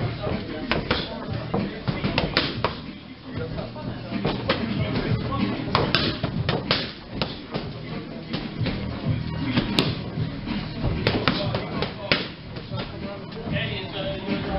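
Boxing gloves striking focus mitts in quick, irregular combinations of sharp smacks, with music playing in the background.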